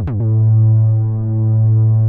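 Cherry Audio Memorymode software synthesizer, an emulation of the Memorymoog, playing one held low bass note from its 'Kicking Bass' preset. The note opens with a quick downward pitch drop like a kick drum, then holds at a steady pitch, slowly swelling and easing in loudness.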